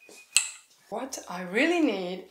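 A single sharp click about a third of a second in, then, from about a second in, a woman's voice making a sound that rises and falls in pitch, without clear words.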